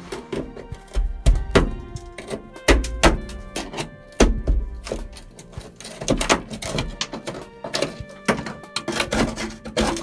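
A screwdriver jabbing and scraping at rusted-through steel on a 1968 Toyota Stout's firewall, giving a string of irregular knocks and scrapes with several heavier thumps, over background music with held notes.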